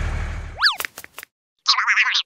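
Cartoon-style sound effects: a low engine drone fades out, then a quick springy boing with a few clicks. A short rattly burst follows near the end.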